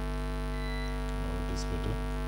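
A steady hum made of many held tones, with faint background music patterns over it between about one and two seconds in.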